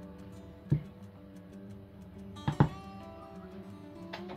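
Soft background guitar music, broken by one sharp knock about three-quarters of a second in and a louder double knock about two and a half seconds in.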